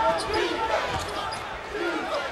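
A basketball being dribbled on a hardwood court, a few short bounces over the steady noise of an arena crowd.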